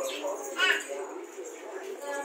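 A young Rajapalayam puppy gives one short, high-pitched whimper a little over half a second in.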